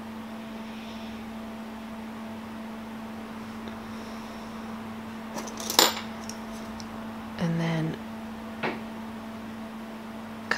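Small hard clicks and clinks of craft tools being handled on a table, in a cluster about halfway through and once more near the end, over a steady low hum. A short buzzing tone lasting about half a second comes between them.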